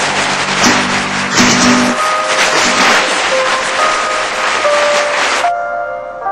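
Loud, dense background music that cuts off about five and a half seconds in, giving way to a quieter passage of clear, held notes.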